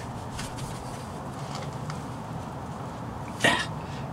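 A man's short huff of breath about three and a half seconds in, over a steady low background hum. Before it come faint small clicks and rustles of hands straining at a van's stuck spin-on oil filter, which will not turn by hand.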